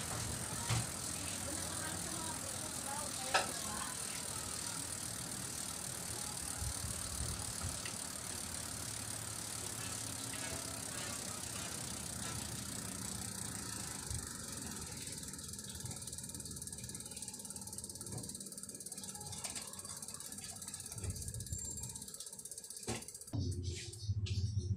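Bicycle rear wheel spinning freely with the freewheel hub ticking as the wheel overruns the still cassette, along with a light rattle. It slows and comes to a stop near the end.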